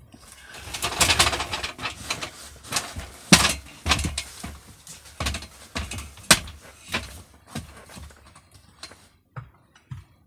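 Irregular knocks, clicks and rustling from handling a corded circular saw and gear in a small timber room, with a burst of rustling about a second in. The saw is not running.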